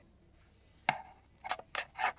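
Plates of a Dyson Corrale cordless hair straightener clicking as it is clamped and opened on strands of hair: one sharp click about a second in, then three quicker clicks near the end.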